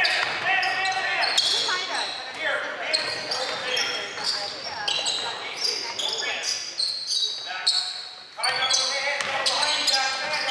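Live basketball play in an echoing gym: the ball bouncing on the hardwood floor, sneakers squeaking, and players and onlookers calling out. The sound runs on busily, dipping briefly about eight seconds in.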